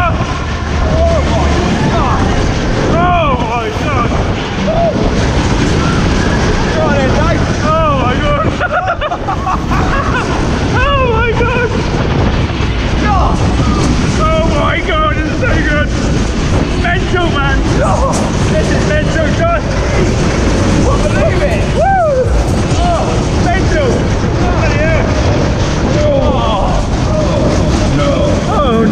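Wind rushing hard over the microphone of a rider on a fast-spinning Matterhorn fairground ride. Voices shout and whoop over it again and again, in short rising-and-falling cries.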